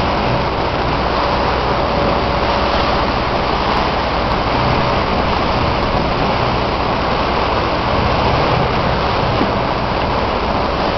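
Steady rush of wind and water from a motorboat moving slowly, with the low, even hum of its engine throttled down underneath.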